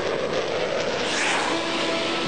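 Rushing noise of an aircraft passing, swelling at the start and again about a second in.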